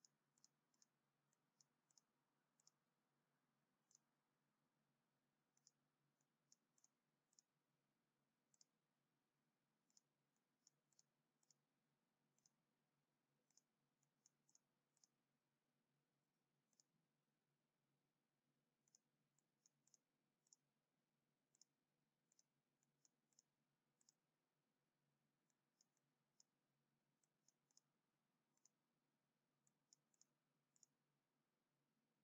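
Faint computer mouse clicks, irregular and often in quick runs of two to four, over near silence.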